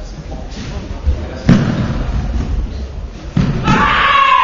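Two sharp thuds during a karate sparring bout, one about a second and a half in and one near the end, as the fighters attack and clash on the foam mats. A loud shout with a falling pitch comes right after the second thud.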